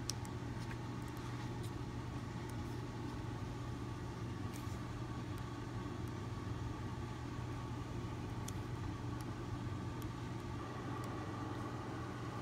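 A steady low hum, with faint scattered ticks and rustles of a paperback picture book's pages being handled and turned.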